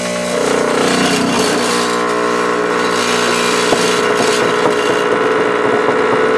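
Rancilio Silvia V3's vibratory pump buzzing steadily while brewing an espresso shot; it starts just after the beginning and holds at an even level.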